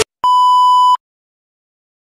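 A single steady test-tone beep of the kind played with television colour bars, starting about a quarter second in and cut off abruptly after about three quarters of a second.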